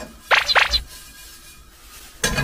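Dry frying pan shaken back and forth on a gas hob grate, the toasting fennel seeds rattling across the pan in two quick swishes.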